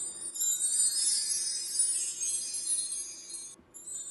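A high, shimmering jingle-and-chime sound effect, looped: it breaks off briefly near the end and starts over.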